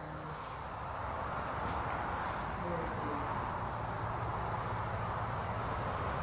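Steady outdoor background noise that grows a little louder in the first second or two, with a faint voice murmuring briefly about halfway through.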